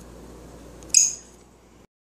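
A single sharp, high ringing clink about a second in, fading quickly over a faint room hum; the audio cuts off just before the end.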